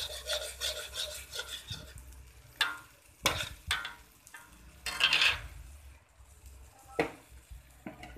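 A metal utensil stirring and scraping thick chili spice paste (sambal seasoning) against a pan, in irregular strokes, with louder scrapes about three and five seconds in.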